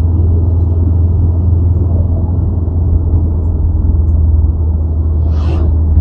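Car cruising at steady speed: a constant low drone of engine and tyre-on-road rumble.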